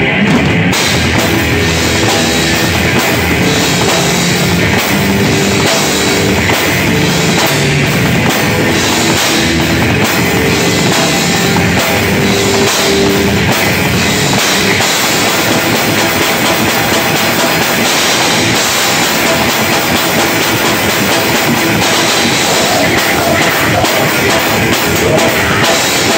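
Live rock band playing loudly, heard from the drummer's position, so the drum kit stands out in front of the rest of the band.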